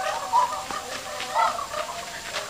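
A chicken clucking in short calls, one about half a second in and another near a second and a half.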